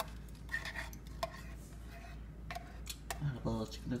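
Metal spoon scraping and clinking against the inside of a tin can as thick canned cheese sauce is scooped out, in a few scattered clicks. A short bit of voice comes in near the end.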